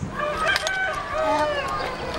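A rooster crowing: one long call, with children's voices around it.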